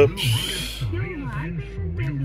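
Car radio playing through the cabin speakers, a voice with some music, over the low steady hum of the Nissan Cube's idling engine just after starting.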